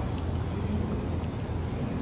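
Steady low rumble of open train-station platform ambience, with faint footsteps on the tiled platform about every half second.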